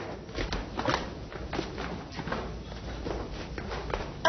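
Footsteps of several people walking down lecture-theatre steps: a run of irregular short knocks and scuffs.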